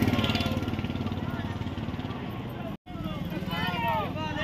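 A motor vehicle engine running close by with people's voices over it. After a cut nearly three seconds in, a crowd of protesters is shouting together.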